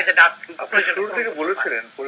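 Speech only: a man talking in Bengali, in conversation.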